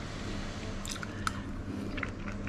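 A person quietly chewing a mouthful of pasta, with a few faint clicks about a second in.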